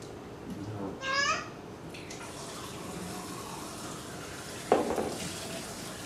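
Water running from a kitchen tap into the sink, a steady hiss that starts about two seconds in. Before it, a short high-pitched voice squeal; past the middle, one sharp knock.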